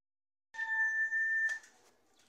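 A steady electronic beep: one pitched tone about a second long, starting abruptly about half a second in after dead silence and cutting off with a click.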